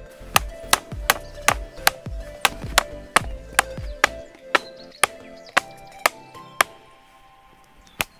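Background music with a steady beat of sharp percussive hits, about three a second over low drum thumps and held tones; the beat stops near the end.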